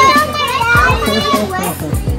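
Young children's excited voices and chatter, with music playing underneath.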